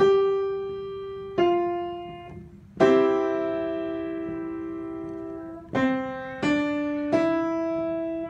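Piano played by the right hand one note at a time from the C-to-G five-finger position. Six notes are struck, each ringing and fading; the third is held for about three seconds.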